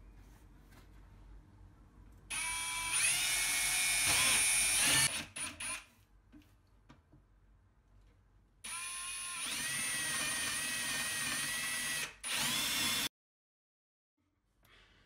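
Ryobi brushless cordless drill boring holes through a painted wooden board: two runs of about three seconds each, the motor whine rising as it spins up and then holding steady, with a brief extra burst after the second run. The sound cuts off suddenly near the end.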